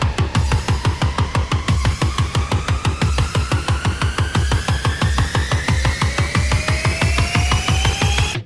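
Electronic dance music from a DJ mix: a fast, even pulsing beat with a synth tone that climbs steadily in pitch, building up.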